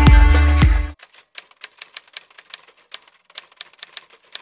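Background music with a steady beat cuts off suddenly about a second in. Then comes a typewriter sound effect: sharp, irregular key clacks, three or four a second.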